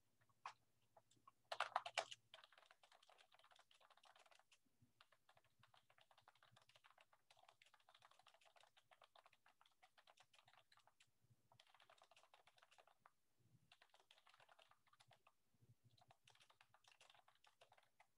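Faint typing on a computer keyboard: runs of quick key clicks, with a louder flurry about two seconds in.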